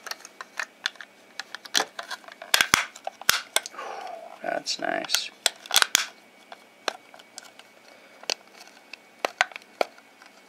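Plastic Raspberry Pi case handled in the fingers: a run of sharp clicks and taps as the snap-together shell and its parts knock, thickest in the first six seconds and sparser after. A short hummed voice sound about four seconds in.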